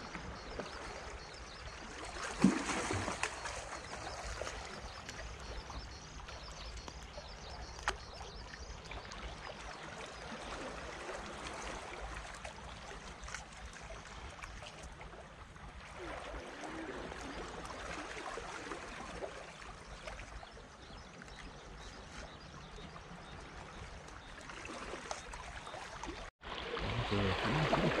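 Small waves washing and lapping among the concrete tetrapods and rocks of a breakwater, a steady wash that swells and eases every few seconds. A sharp knock sounds about two and a half seconds in, and after a brief break near the end the water sounds louder.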